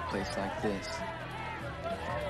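Film dialogue: a person speaking over background music.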